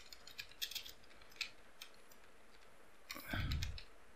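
Faint computer keyboard keystrokes, a few scattered taps as a line of code is typed, with a brief louder noise about three seconds in.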